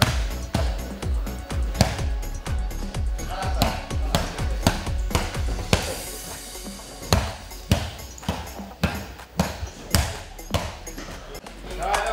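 Gloved fists punching a vinyl grappling dummy in ground-and-pound strikes: an uneven run of thuds, sometimes several a second, with short pauses between flurries. Background music runs underneath.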